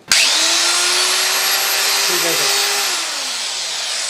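Handheld 4-inch electric marble cutter (1250 W, flat body) switched on and run free in the air with no load: it spins up at once to a steady high whine, then is switched off about three seconds in and winds down.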